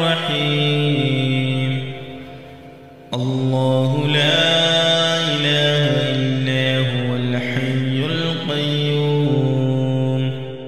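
Man's voice chanting Quranic recitation in melodic tajweed style, drawing out long held notes that bend slowly in pitch. The voice trails off about two seconds in and starts again just after three seconds.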